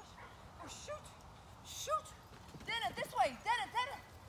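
A dog barking in short, high barks as it runs: a couple of single barks early on, then a quick string of about six barks in the last second and a half.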